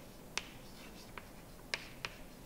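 Chalk writing on a blackboard: three sharp clicks as the chalk strikes the board. The loudest come about half a second in and near the end, with a fainter one just after a second.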